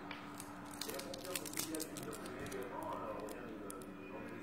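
Clear plastic bag crinkling and crackling as it is handled and opened around a small metal vape part, a quick run of sharp crackles in the first two seconds. A faint voice is heard in the background later on.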